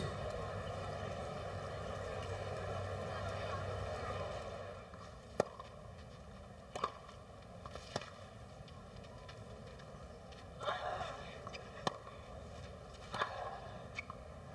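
Tennis crowd murmuring, then settling to a hush. A rally follows on a clay court: a string of sharp racket-on-ball hits, one every second or so.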